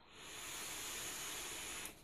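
A long drag on an Oumier VLS rebuildable dripping atomizer: a steady, fairly quiet hiss of air drawn in through its airflow holes, lasting about a second and a half and cutting off just before the end.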